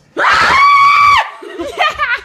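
A person screaming in fright: one high-pitched scream held for about a second, then dropping off into a few shorter, wavering vocal cries near the end.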